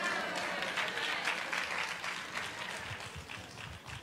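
Audience applauding in a large hall, with a few voices mixed in, dying away over the few seconds.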